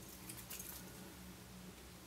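Quiet room tone with a faint, steady low hum, and a slight faint handling sound about half a second in.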